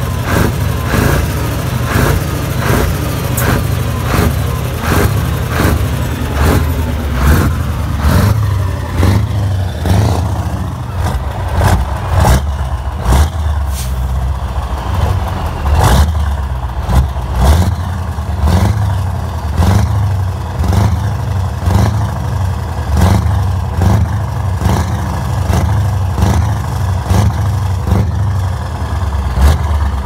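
Heavy truck's diesel engine running, heard close to its triple chrome exhaust pipes: a deep steady note with repeated short surges in loudness.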